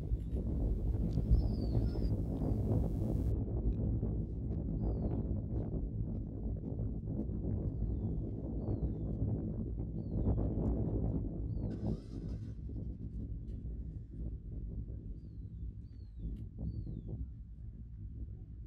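Open-field ambience: a steady low rumble with faint, short, high whistles that glide downward, heard every second or two, and a brief hiss about twelve seconds in.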